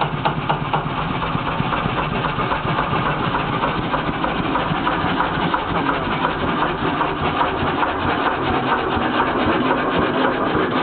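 Single-cylinder Kelvin K1 marine engine running steadily on diesel, with an even, rapid beat of firing strokes.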